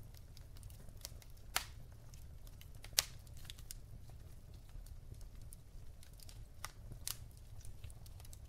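Wood logs burning in a fireplace, crackling with irregular sharp pops, the loudest about one and a half and three seconds in, over a low steady rumble.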